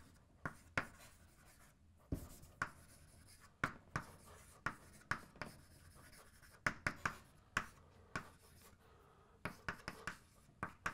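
Chalk writing on a chalkboard: a run of short, irregular taps and scrapes as words are written out.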